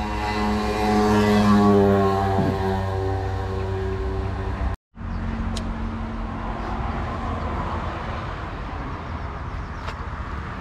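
A motor vehicle's engine passing on the road, its pitch falling slightly, loudest about a second and a half in and fading away. After a brief gap there is steady road traffic noise with a low hum.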